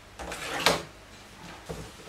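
Things being handled on a wooden desk while tidying up: fabric rustling, a sharp knock about two-thirds of a second in as something hard is set down, and a softer thump near the end.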